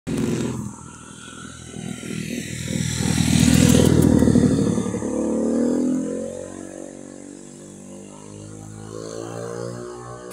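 A motor vehicle passes: its engine rumble builds to a peak around three to four seconds in, then fades away. From about halfway, steady background music takes over.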